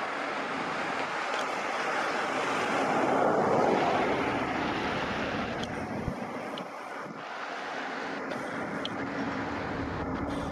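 A vehicle passing by: a rushing noise that builds to its loudest about three to four seconds in, then fades back to a steady background rush.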